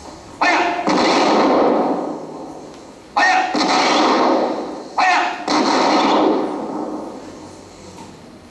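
Three volleys of gunfire from an old film's soundtrack, heard over loudspeakers in a hall. Each volley is a sudden bang, just after a short shout, that dies away over about a second.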